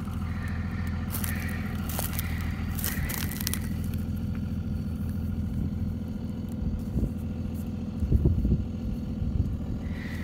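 A steady low motor hum, like an engine running at idle. Over it come crackling and crunching sounds, like steps on dry crop residue, for the first few seconds, and a few soft knocks later on.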